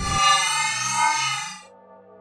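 Time-travel sound effect: a loud, bright, ringing tone that swells and then fades out about a second and a half in, leaving a quiet low held note of background music.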